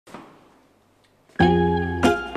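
Plucked-string instrumental music, like a guitar, starting suddenly about one and a half seconds in with a loud held chord. Before it there is only a faint short sound at the very start and near quiet.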